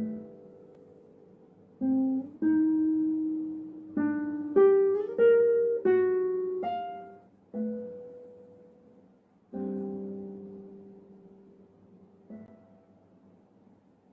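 Nylon-string classical guitar played solo: a slow phrase of single plucked notes and chords, each left to ring and fade, with a slurred rise in pitch about five seconds in. A last soft note about twelve seconds in dies away.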